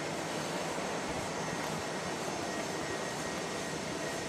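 Steady rushing outdoor background noise with a faint high tone, holding an even level with no distinct events.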